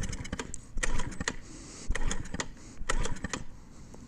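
Groups of light clicks and taps about once a second, from hands working around a stalled Honda Ruckus scooter; its engine is not running.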